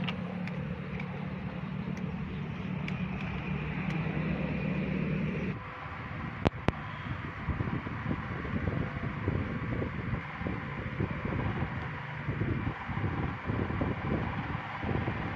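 A steady low mechanical hum over outdoor noise cuts off abruptly about five seconds in. It gives way to an uneven low rumble like wind on the microphone, with two sharp clicks shortly after.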